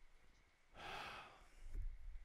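A man breathing out once, a soft sigh about a second in, over quiet room tone.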